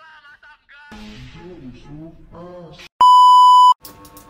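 A single loud, steady electronic beep, like an edited-in censor bleep, lasting under a second, about three seconds in. Before it come a short stretch of voice and music from an edited-in meme clip.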